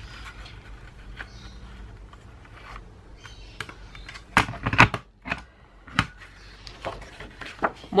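Planner Punch Board's plastic handle pressed down to punch a hole through a sheet of paper: a quick cluster of sharp clacks about halfway through, then a single click about a second later, with light paper handling around them.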